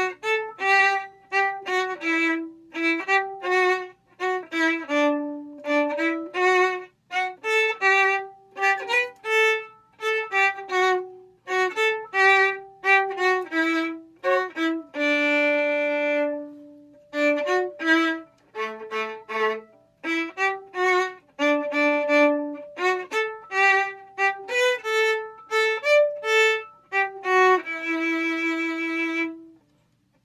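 Solo violin playing a simple D major beginner's tune at a slow tempo, mostly short, detached staccato notes with accents, and two long held notes, one about halfway through and one near the end.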